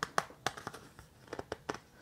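Hands handling a CD and its paper booklet: a string of short, light clicks and taps.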